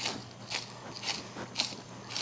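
Hand-held pepper mill grinding black peppercorns, a dry crunching grind in short twists about twice a second.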